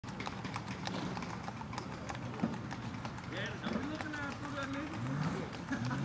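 Hooves of a gaited Tennessee Walking Horse striking a paved lane in rapid, even hoofbeats. People's voices join from about three seconds in.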